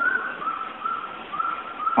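A thin, high whistling tone in about five short notes over two seconds, the first note a little higher than the rest.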